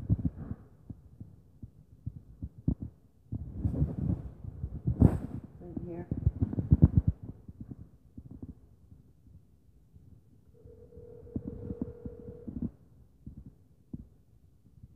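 Muffled, irregular low thuds and rumbling, loudest in the first half, with one sharp knock near the middle. Near the end a cell phone placing an outgoing call plays a steady ringback tone lasting about two seconds.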